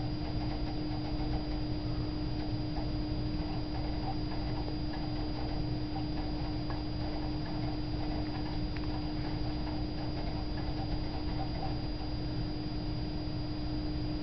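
A computer booting from a live CD: a steady hum with a constant faint high whine and light, irregular ticking from the CD drive as it reads the disc.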